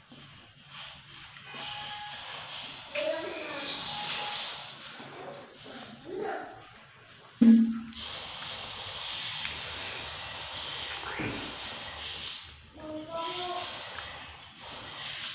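Close mouth sounds of people eating soft watermelon-flavoured jelly pudding: biting and chewing, with short hums, the loudest about seven seconds in.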